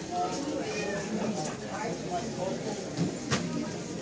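Indistinct chatter of several voices in the background, with two sharp clicks about three seconds in.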